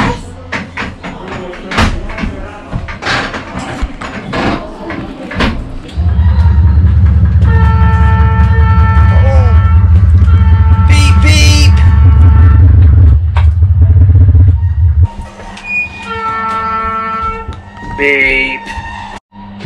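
Buttons, switches and levers on a diesel locomotive's cab control desk being clicked and worked by hand. About six seconds in, a loud steady low rumble starts suddenly with held steady tones over it, and it cuts off about nine seconds later.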